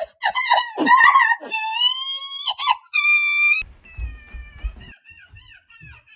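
High-pitched wailing cries that rise and fall, then one held note that cuts off suddenly just after three seconds in, followed by a thinner falling whine.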